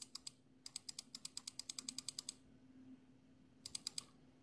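Typing on a computer keyboard, faint: a quick even run of key clicks, about ten a second for over a second and a half, with a few more clicks at the start and near the end.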